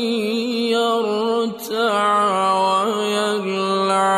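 Male voice reciting the Quran in melodic mujawwad style, holding long drawn-out notes. The voice breaks off briefly about a second and a half in, then resumes with wavering, ornamented turns of pitch.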